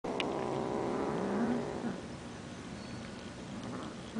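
Persian kitten purring, with a couple of short rising vocal sounds in the first two seconds, after which it goes on more quietly.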